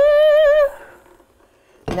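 A woman's drawn-out "whoo!" of delight, rising steeply in pitch and then held with a slight waver for about half a second, followed by quiet until speech starts near the end.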